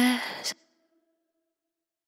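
The end of a sped-up electronic pop song: a short breathy female vocal sound cut off with a click about half a second in, leaving a faint fading tone before the track goes silent.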